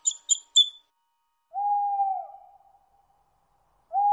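A cartoon owl hooting: two long, steady hoots, each dropping slightly in pitch at its end, the second starting just before the end. A few quick, high bird chirps come first.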